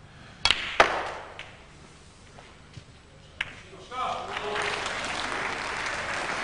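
Snooker cue tip striking the cue ball, then a sharper click as the cue ball hits the pack of reds, followed by a few fainter ball clicks. About four seconds in, the arena audience starts murmuring and applauding a red that went in, though not the way the shot was played.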